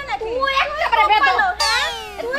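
Women shouting at each other in a heated argument in high-pitched voices, with a falling sweep sound effect near the end.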